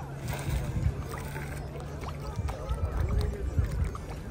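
Water splashing and sloshing as a crowd of fish thrashes at the surface for floating food, with the voices of people in the background.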